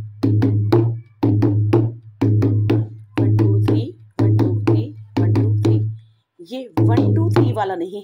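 Dholak played with the fingers in a repeating bhangra pattern: a quick group of three strokes about once a second, each group with a low ringing boom under the sharp finger slaps.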